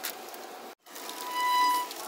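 A steady low hiss, a brief cut to silence, then a single held musical note at one steady pitch for under a second, the loudest sound here.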